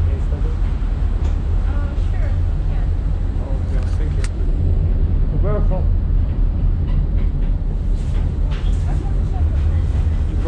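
Steady low rumble of a moving tram heard from inside the car, with quiet conversation over it. A single sharp click comes a little before halfway.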